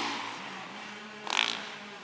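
Motocross dirt bike engine on the practice track, its sound fading away over the first second while a fainter engine drone carries on. A short noisy burst comes about one and a half seconds in.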